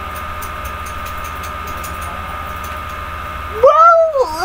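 Steady background hum with a constant high whine. Near the end a loud, wavering vocal sound cuts in, its pitch rising and falling.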